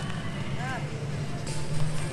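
Steady low hum of outdoor ambience, with a faint rising-and-falling tone about two-thirds of a second in.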